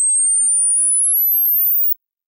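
A single pure sine test tone from a software test oscillator, high and steady in loudness, rising in pitch from about 8 kHz to about 16 kHz as its frequency is turned up. It cuts off shortly before the end.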